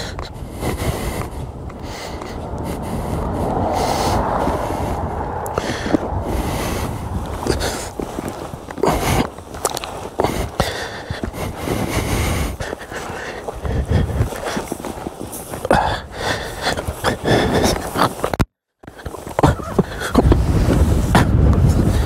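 Wind buffeting a handheld camera's microphone, with crackling handling and rustling noise. The sound drops out for a moment about three-quarters of the way through.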